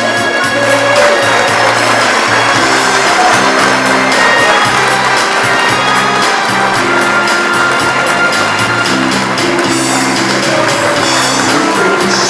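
Instrumental intro of a recorded backing track for a pop song, with a bass line under a steady beat, before any singing comes in.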